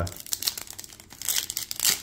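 Trading card pack wrapper crinkling and tearing as it is pulled open by hand, a dense run of fine crackles that grows louder in the second half.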